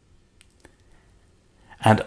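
Quiet room tone with two faint, short clicks about half a second in, then a man's voice starts speaking near the end.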